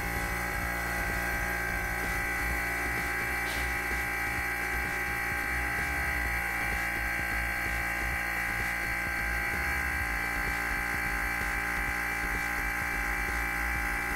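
Vacuum pump running with a steady hum, evacuating the chamber as the pressure falls.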